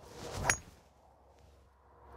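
A golf driver swishing through the downswing and striking the ball off the tee with one sharp crack about half a second in: a well-hit drive.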